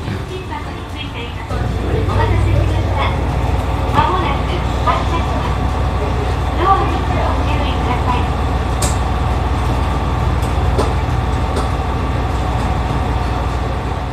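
Steady low rumble inside a train car, which jumps up in level about a second and a half in and then holds. Faint voices sound in the background, and there is a single click near the end.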